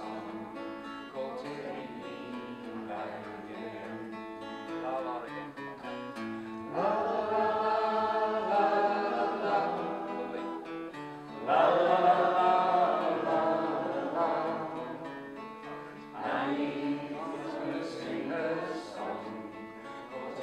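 Live folk song on a strummed acoustic guitar. Louder sustained melody lines come in about seven, eleven and sixteen seconds in.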